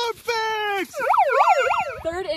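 A shouted voice for the first second, then a handheld megaphone's built-in siren warbling rapidly up and down, about three sweeps a second.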